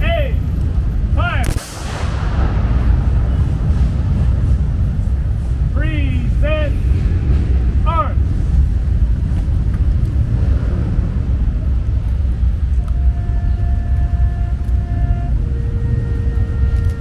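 A single volley of rifle fire from a seven-man Marine honor guard firing a 21-gun salute, one sharp crack with a short echo about one and a half seconds in. Shouted drill commands come around six to eight seconds in, over a steady low rumble of city traffic.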